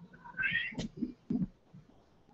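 Domestic cat meowing once, a short high call, followed by a sharp click and a couple of soft knocks.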